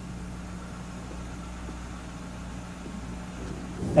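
Steady low hum under faint street background noise, with no clear single event.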